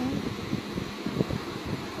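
Handling noise on a phone microphone held close against the body: soft irregular rubbing and small bumps over a steady low hum.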